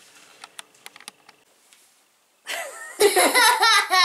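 A few faint clicks, then a short gap, then a boy laughing loudly from about three seconds in.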